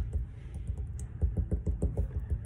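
Rapid fingertip taps into a thin puddle of a slime-like mixture on a lab desk, several light thuds a second in an even run. The mixture firms up under the quick pokes and kind of acts like a solid.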